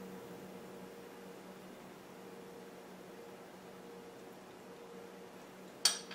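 Quiet kitchen room tone with a faint steady hum, then one sharp click near the end.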